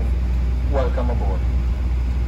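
Steady low hum of a jet airliner cabin, with a voice speaking briefly about a second in, fitting the in-flight welcome video on the overhead screens.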